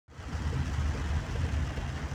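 Torrential rain on a car's roof and windshield, heard from inside the cabin, over a steady low rumble from the car.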